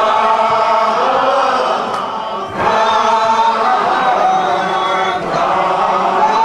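Church congregation singing together, many voices holding long notes, with a short break about two and a half seconds in before the next phrase.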